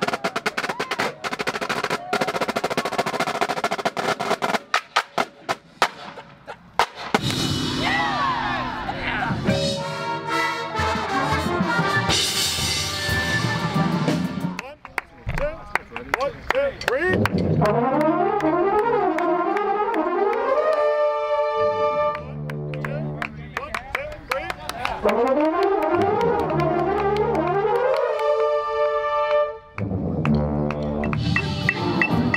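A drum corps drumline plays fast stick strokes for the first few seconds. A drum corps brass section then takes over, playing held chords and quick slurred runs up and down in rehearsal.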